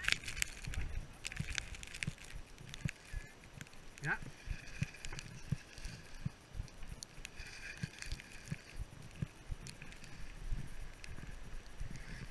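Skis running and scraping through soft snow, with wind rumbling on a body-worn action camera's microphone and scattered clicks. A voice says "yeah" about four seconds in.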